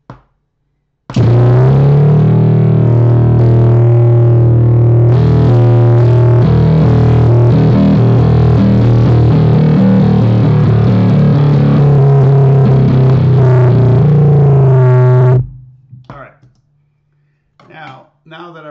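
Whamola, a one-string electric bass, struck with a drumstick and played through a fuzz pedal: a loud, distorted bass drone whose pitch shifts from note to note. It starts about a second in and stops fairly suddenly near the end.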